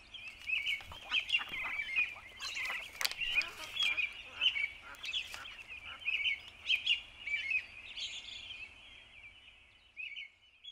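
A flock of birds calling in a busy, rapid chatter of short chirps, with a few sharp clicks in the first few seconds; the calls fade away near the end.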